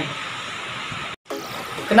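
Steady background hiss with no distinct source, broken by a brief moment of dead silence about a second in where the recording is cut; a man's voice begins just at the end.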